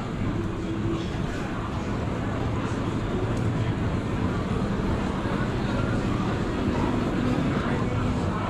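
Steady city street ambience: a low hum under a murmur of background voices from people along the promenade.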